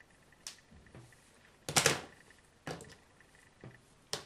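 Handling noises from hair styling with a comb and tools: a few short clicks and rustles, the loudest a quick double clatter just under two seconds in.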